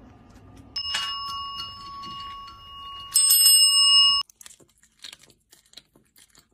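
A small bell rings twice, about a second in and again about three seconds in, the second ring louder and higher; the ringing cuts off suddenly. Faint crunchy clicks of a cat chewing follow near the end.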